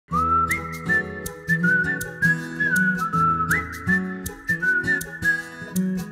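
Instrumental song intro: a whistled melody with a few upward slides between notes, over a low accompaniment and a steady percussive beat.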